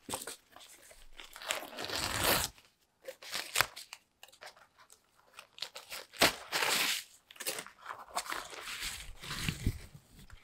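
Rustling and crinkling of a taped wrapping sleeve as it is pulled open and off a plant, in irregular bursts, loudest about two seconds in and again around six to seven seconds in.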